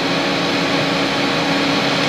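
Maruti Suzuki Eeco van's engine running with a steady hum and hiss.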